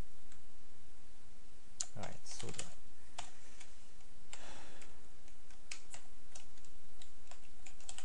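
Computer keyboard being typed on: irregular single keystrokes, with two longer, duller sounds about two and four and a half seconds in.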